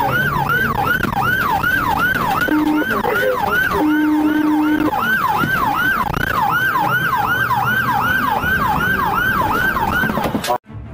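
Police car siren in fast yelp mode, its pitch sweeping about three times a second without a break. A low steady tone sounds twice near the middle, briefly and then for about a second.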